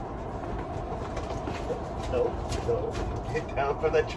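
A steady low rumble, with a few short faint voice sounds in the middle and a woman speaking briefly near the end.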